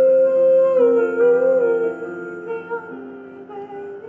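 A woman singing a long, wordless held note that wavers in pitch, over a soft musical backing. Her voice fades about three seconds in, leaving the quieter accompaniment.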